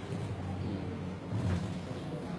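Steady low rumbling background noise with a brief faint click at the start.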